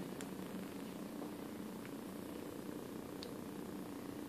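Steady low room hum with a faint pitched drone, broken by a few faint ticks.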